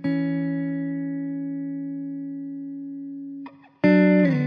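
Background guitar music: a chord is struck and left to ring, fading slowly, and a new chord is struck near the end.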